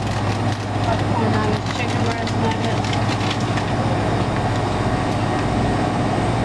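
Steady low hum of a supermarket freezer case and store background noise, with rustling of a plastic bag of frozen chicken nuggets being handled.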